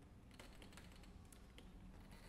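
Near-silent concert hall with faint scattered clicks and rustles, starting about half a second in.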